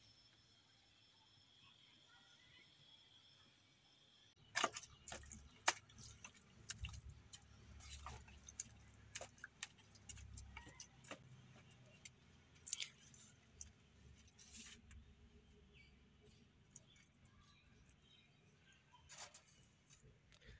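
Hands scooping and mixing a heap of wet mud: irregular, scattered clicks and knocks, mostly faint, beginning about four seconds in after a stretch of faint steady hiss.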